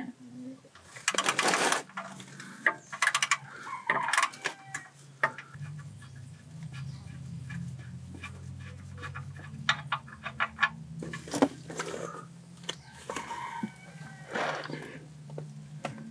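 Quick runs of metallic clicks from a wrench loosening an oil pan drain plug, then a steady low sound of engine oil draining out of the pan, with scattered small clicks.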